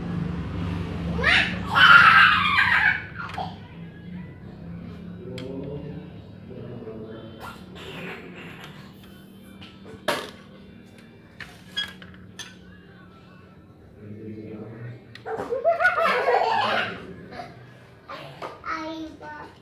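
A young child laughing loudly twice, near the start and near the end, with a few sharp clicks of a screwdriver and metal parts of a copier fixing unit in between.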